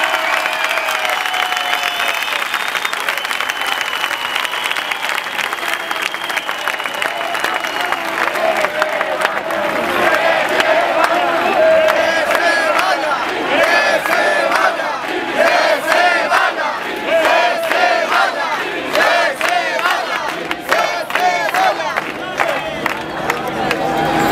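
A large protest crowd shouting and cheering, the many voices overlapping and growing a little louder about halfway through.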